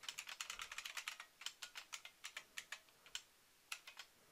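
Faint typing on a computer keyboard: a quick run of keystrokes for about the first second, then slower, spaced taps.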